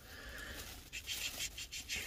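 Clear plastic bag crinkling as it is handled, with a string of short crackles starting about a second in.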